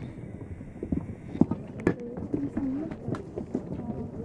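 Irregular sharp clicks and knocks, with a person's voice faintly in the background.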